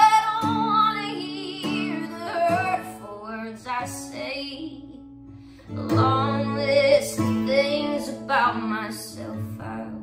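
Song with a female lead vocal singing the chorus over instrumental accompaniment, with a brief break in the singing about halfway through.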